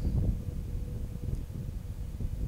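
Wind buffeting the microphone, a low uneven rumble that rises and falls, with a faint steady hum underneath.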